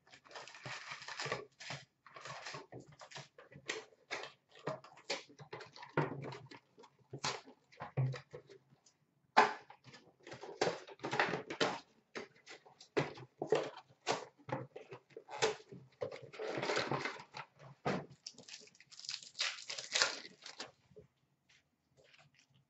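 Hockey card box and foil card packs being handled and opened: a run of short crinkles, taps and rustles, with longer rustling stretches about 17 and 20 seconds in.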